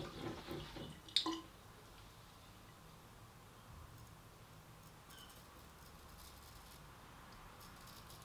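A stub-tailed straight razor scraping faintly across lathered stubble in a few short strokes in the second half, an edge the shaver then judges a failure that needs more honing. In the first second and a half, water splashes die away and there is one sharp click.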